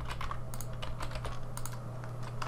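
Computer keyboard keys and mouse buttons clicking in short, irregular taps, over a steady low hum.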